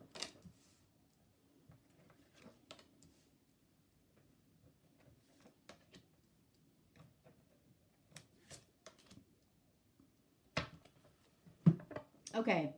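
Tarot cards being dealt face down onto a wooden table: faint, scattered taps and slides of card on wood, with a couple of louder taps near the end.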